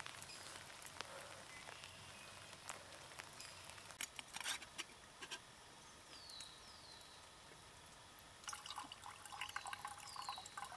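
Cowboy coffee trickling from a camp pot into a mug, starting near the end, poured slowly off its settled grounds. Before that there are only faint scattered clicks and crackles.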